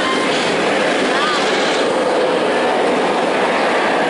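Inverted steel roller coaster train running along the track with a steady rumble as it dives into a loop.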